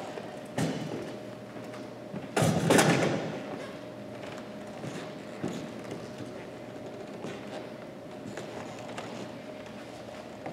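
Knocks and thumps of workout equipment being handled on a wooden gym floor, with the loudest knock, followed by a ringing tail, about two and a half seconds in and lighter clicks after it. A faint steady hum runs underneath.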